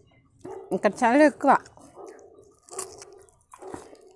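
A dog's short, high, wavering cries, a cluster of them about half a second to a second and a half in, followed by softer scattered noises.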